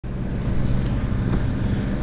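Car engine idling steadily, started in freezing weather.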